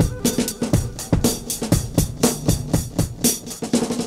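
Instrumental passage of a 1973 progressive folk-rock track, with the drum kit to the fore: kick and snare hits at about four a second over sustained bass and chords.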